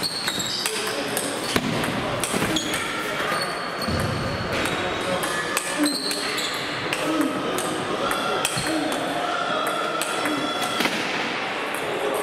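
Table tennis ball clicking off bats and table in a rally, mixed with clicks from rallies on other tables and background voices, echoing in a large sports hall.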